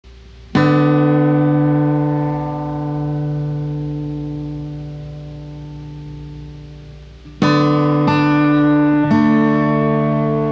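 Slow blues instrumental on guitar. A chord is struck about half a second in and left to ring and fade for several seconds, then three more chords come in quick succession near the end.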